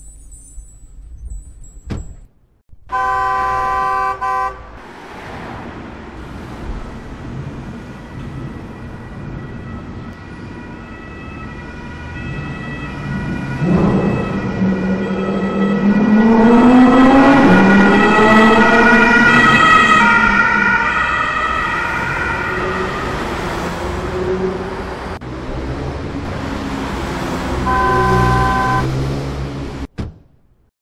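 A siren wailing, its pitch rising and falling, loudest in the middle stretch. A short steady chord of tones sounds about three seconds in and again near the end.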